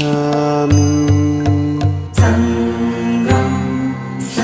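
Buddhist devotional chant sung to music: long held sung notes over a low drone and a soft low pulse about twice a second, moving to new notes twice in the second half.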